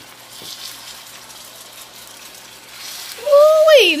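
Chicken broth poured into a hot electric skillet of pork chops: a faint hiss of liquid in the pan. A little past three seconds in, a woman's voice exclaims loudly over it.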